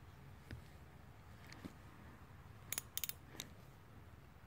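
Mostly quiet, with a few faint, sharp clicks as a metal hex bit socket on an extension is handled in the hand, a quick run of four or five of them about three seconds in.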